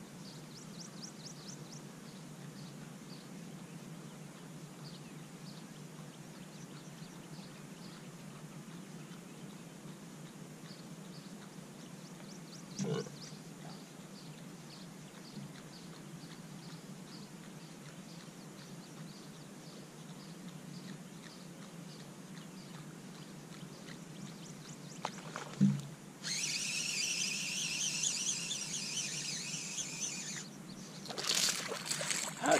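A fish striking a topwater lure at the surface near the end: one sudden loud splash, followed by a few seconds of dense, high-pitched buzzing. Before it, faint short chirps about two a second over a low steady hum.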